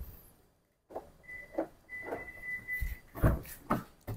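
A car's rear passenger door being unlatched and swung open, with a few short knocks from the handle and latch, the strongest near the end. A steady high electronic beep sounds, once briefly and then again for about a second.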